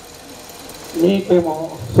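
A man's voice amplified over a microphone and loudspeakers, speaking briefly about a second in after a short pause. A steady low background noise fills the pause.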